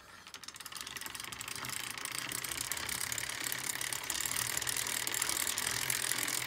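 Freshly wax-lubed bicycle chain running over a Shimano Dura-Ace chainring, cassette and rear derailleur as the cranks are turned by hand, a fast dense ticking whirr that builds over the first two seconds and then holds steady. It is quite loud, louder than it normally is. The owner has ruled out the Di2 indexing and the chain's direction and wonders whether the heavy load of new wax is making it noisy.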